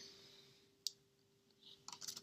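Near silence: room tone with a faint steady hum, one sharp click about a second in, and a few soft ticks near the end.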